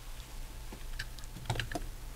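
Faint, irregular light clicks and taps of a large plastic robot figure being set down and adjusted on a shelf, mostly in the second half.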